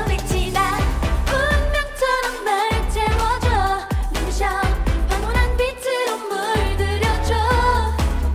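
K-pop girl-group dance-pop song: women's voices singing over a driving beat with heavy bass. The bass drops out briefly twice, about two seconds in and again near six seconds.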